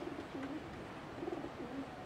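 A dove cooing: two short phrases of low, soft coos, one at the start and one past the middle.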